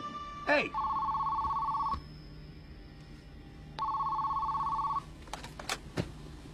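Telephone ringing twice with a two-tone warbling electronic ring, each ring about a second long and about three seconds apart.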